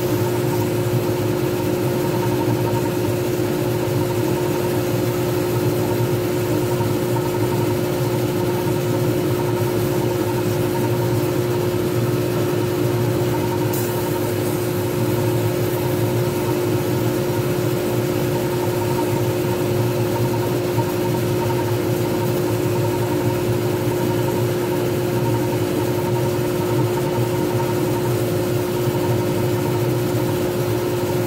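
Wood lathe running at a steady speed, its motor giving an even, unchanging hum with a few steady tones, while a pen blank spins between centres with an abrasive pad held against it during finishing.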